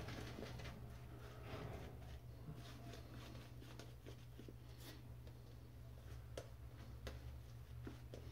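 Shaving brush working soap lather on the face, a faint soft swishing with a few light clicks, over a steady low hum.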